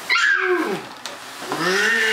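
Two drawn-out vocal calls, each rising and then falling in pitch; the second and longer one starts about halfway through.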